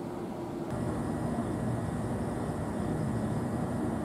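Steady hum of an electric train standing at the platform, with a faint high whine over it. It gets louder a little under a second in.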